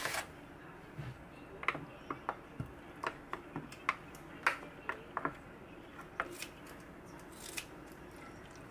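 Kitchen handling sounds made of scattered short clicks and knocks: plastic food containers set down and opened on a counter, a wooden spoon scraping kimchi out of a plastic tub into an earthenware pot, and kitchen scissors snipping kimchi near the end.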